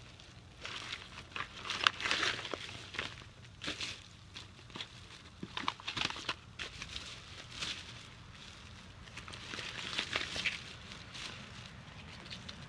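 Plastic bags and cellophane-wrapped gift packaging crinkling and rustling as hands rummage through them, in irregular bursts with short pauses between.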